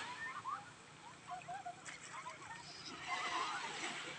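Small waves washing onto a sandy shore, one wash swelling near the end, with many short high calls sounding over the water.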